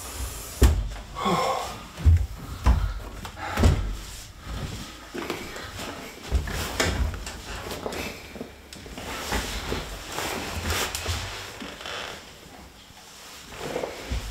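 A few heavy bumps in the first four seconds, then softer knocks and shuffling: an office chair and a wheelchair being shifted and knocked together as a person transfers from one to the other.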